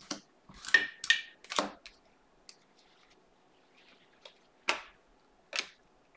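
Prizm basketball trading cards being handled: short swishes and light clicks as stiff cards are slid and flicked one over another. A quick run of four in the first two seconds, then two more near the end.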